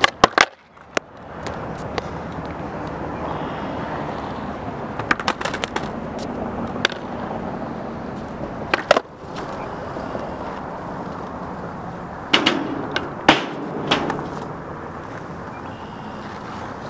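Skateboard on a concrete skatepark: sharp pops and clattering board impacts as a flip trick is tried at the start, then the steady noise of urethane wheels rolling over concrete. More clacks follow around the middle, and a cluster of loud pops and slaps near the end.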